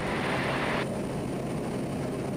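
Steady drone of a Quest Kodiak 100's PT6A turboprop engine and propeller in flight, heard in the cockpit. A higher hiss cuts off sharply under a second in.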